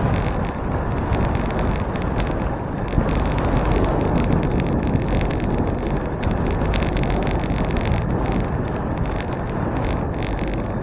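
Steady wind rush on a handlebar-mounted camera's microphone while the bicycle rides along a paved road, with a single small tick about three seconds in.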